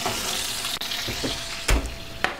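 Steady sizzling of hot food cooking, with a single knock near the end as a hot sheet pan is handled.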